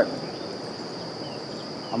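Crickets singing in a steady, unbroken high drone over an even low outdoor rustle.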